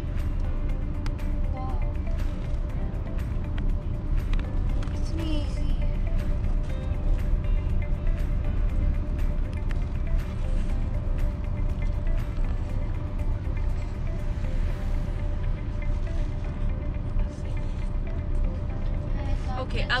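Background music laid over the steady low rumble of road and engine noise inside a moving compact SUV's cabin.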